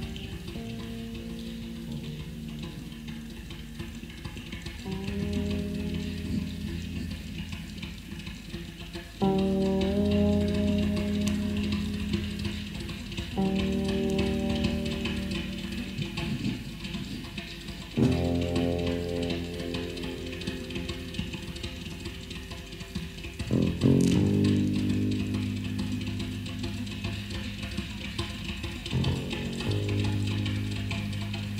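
Slow, sparse meditation music: long, held low bass guitar notes, a new one about every four to five seconds, over a steady hiss.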